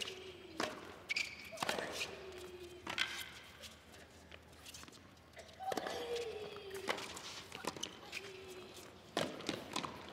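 Tennis rally on a hard court: the ball is struck by rackets with sharp pops, roughly one to a second and a half apart, with a quieter gap in the middle. Faint falling tones sound between some of the hits.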